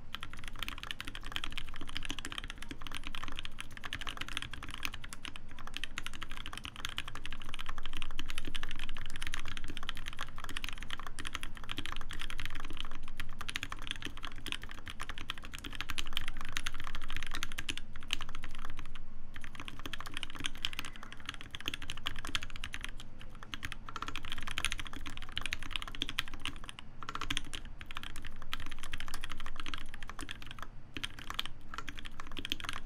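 Rapid, continuous typing at speed-test pace on a TGR Alice split 60% mechanical keyboard with a brass plate, GMK keycaps and lubed 68 g Gateron Black Ink linear switches, with a brief pause about two-thirds of the way through. The keystrokes sound muted, which the typist puts down to the switches being lubed very heavily where the stem bottoms out on the housing.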